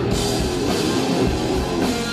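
Live hard rock band playing: electric guitar over bass and drum kit. Cymbal crashes come at the start and again near the end.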